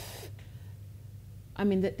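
A woman takes a quick audible in-breath at the start of a pause in her speech, over a steady low room hum; she starts speaking again near the end.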